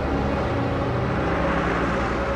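A truck and a car driving past close by: engine rumble and road noise, swelling about one and a half seconds in as they pass.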